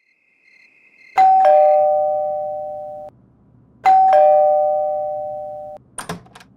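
Doorbell rung twice: each ring is a two-note ding-dong chime, a higher note then a lower one, ringing out and fading over about two seconds. The rings come about a second in and about four seconds in.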